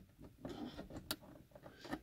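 Faint handling of a plastic map-light lens cover and plastic trim tool: light rustling with one sharp plastic click just past halfway.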